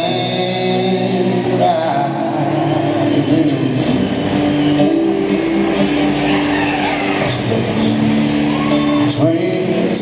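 Live country music played in an arena: a steel-string acoustic guitar strummed at a steady, loud level, with a voice singing at times.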